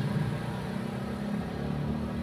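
A steady low engine hum of a motor vehicle running.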